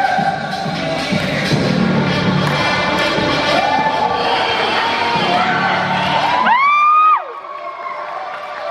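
Loud recorded dance music with a group of people shouting and cheering over it. About six and a half seconds in, one long loud whoop rises, holds and falls, and the music then drops out.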